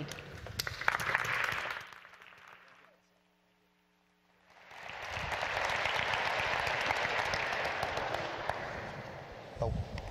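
Audience applauding. The clapping dies away a couple of seconds in, there is a short near-silent gap, and then it rises again about five seconds in and tapers off near the end.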